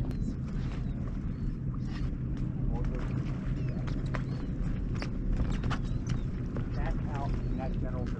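Steady low hum of an idling boat motor, with faint distant voices and scattered light clicks and knocks on the boat.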